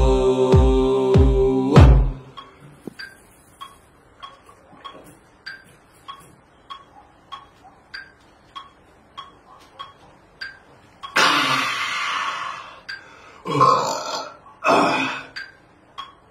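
A man belching loudly and at length, in several gusts over about four seconds starting around eleven seconds in. Before it, the song with its beat stops about two seconds in, followed by faint ticks roughly every 0.6 seconds.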